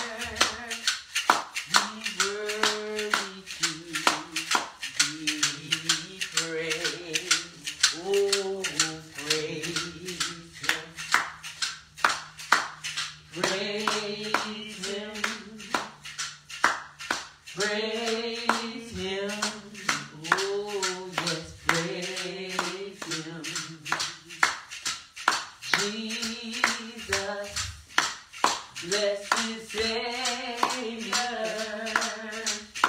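Voices singing a church praise song with steady hand clapping on the beat, about two claps a second.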